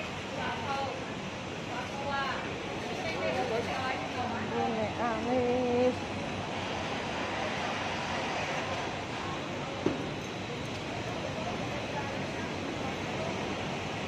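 Busy street ambience: nearby passers-by talk for the first six seconds over a steady rushing background of road traffic. A single sharp knock sounds near the ten-second mark.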